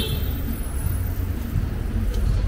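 City street traffic: cars passing with a steady low rumble, and a brief high-pitched squeal right at the start.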